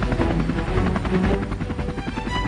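A small light helicopter flying low and climbing away, its main rotor chopping in a fast, even beat over its engine.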